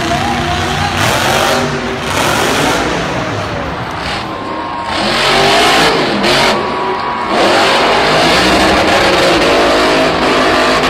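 Monster truck engines revving hard over a dense roar, their pitch rising and falling. The sound gets louder about five seconds in.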